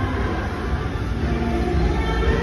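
Steady low rumble of a large indoor concourse, with faint background music.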